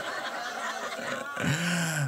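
Audience laughing after a punchline, then a single voice holding one steady note near the end.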